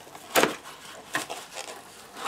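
Cardboard box and its packing being handled: a short sharp knock and rustle about half a second in, and a lighter one a little after a second.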